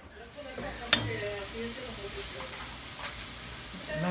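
Egg frying in the hole of a slice of bread in a small nonstick skillet, sizzling steadily, with one sharp click about a second in.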